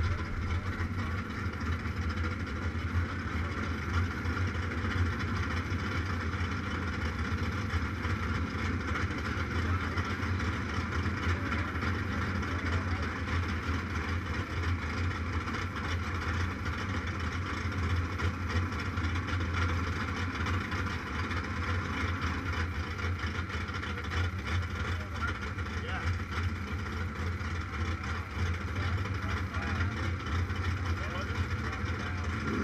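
Motorcycle engine idling steadily with an even low hum and no revving.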